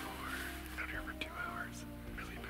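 A man whispering to the camera over soft background music with held tones.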